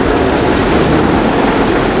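Loud, steady background din: an even rushing noise with no distinct voice or event standing out.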